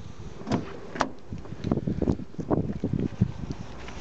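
Driver's door of a Volvo V50 being opened: two sharp clicks about half a second apart, then irregular knocks and rustling as the door swings open.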